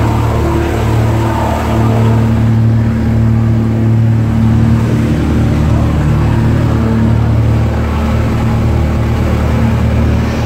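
Engine of a vehicle they are riding in, running with a steady low drone at constant speed.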